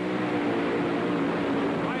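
Top Fuel dragster's supercharged, nitromethane-burning V8 running on the starting line, a steady droning note that falls slightly in pitch, as heard through an old TV broadcast soundtrack.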